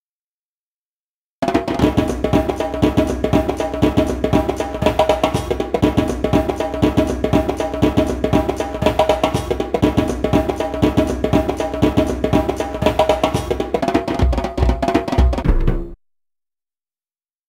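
Soundtrack music with drums and percussion, starting about a second and a half in after silence and cutting off abruptly just before the end.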